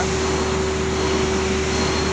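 Palm-oil mill machinery running steadily at the cracked-mixture elevator: the electric motor drive and the conveyors give a loud, even noise with one constant droning tone and a low hum underneath.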